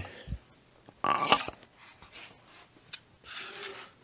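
Metal forming die carrying an aluminium blank being slid by hand across the steel bolster of a rubber pad press: a low thud, then a rasping scrape about a second in, and a few light clicks.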